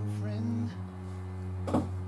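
Cello playing long held low notes, moving to a new note less than a second in, heard as music from the video.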